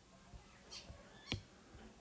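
Faint stylus taps and scratches on a tablet screen during handwriting, with one sharper tap just over a second in.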